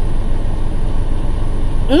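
Steady low rumble of a semi-truck's diesel engine idling, heard from inside the cab.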